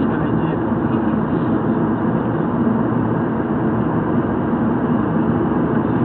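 Steady road and wind noise inside a moving car's cabin, with a rear window wound fully down.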